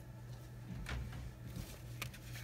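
Quiet room tone with a steady low hum and one soft tap about a second in, with light handling of cardstock on the table.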